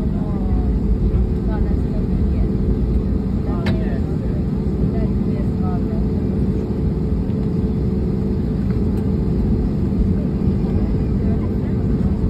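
Steady jet engine and cabin noise inside an airliner taxiing at low speed: an even low rumble with a constant hum. Faint voices are heard in the cabin.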